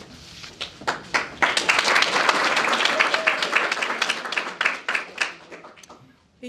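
Audience applauding, the clapping building up about a second in and tapering off near the end.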